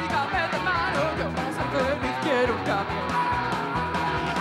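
Live rock band playing: a singer's vocal line over a steady drum beat and electric guitar.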